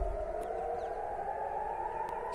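Civil defense siren sounding a rocket-attack alert, its wailing tone gliding slowly upward in pitch.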